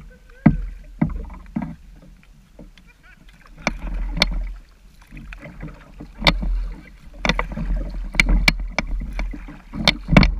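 Sun Dolphin Aruba 10 kayak being paddled: sharp short knocks and splashes from the paddle strokes come every second or two over a steady low rumble picked up at the bow.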